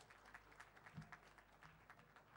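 Faint, scattered audience applause: separate hand claps, several a second, thinning out towards the end.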